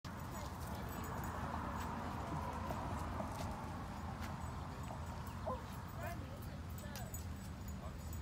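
Quiet outdoor background: a steady low rumble with faint, distant voices and scattered light clicks.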